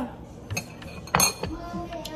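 A metal fork clinking against a ceramic bowl: a light tap about half a second in and a sharper, louder clink about a second in. Near the end a steady humming tone begins.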